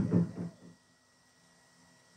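The last words of a man's sentence in the first half second, then near silence: room tone.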